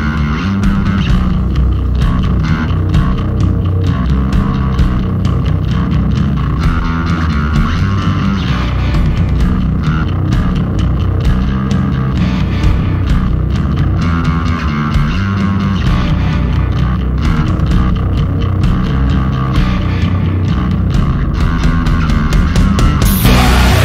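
A post-metal band's recording playing loudly and densely: electric guitars over a prominent, heavy bass guitar tone, with the low end strong throughout.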